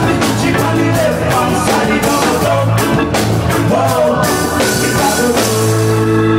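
Live reggae band playing, with a male vocalist singing over drums, bass and guitar. Near the end a held keyboard chord comes in.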